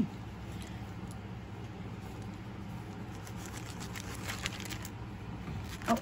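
Faint, scattered rustling and crinkling as a black velvet bag is opened and the plastic bag inside it is handled, over a steady low hum.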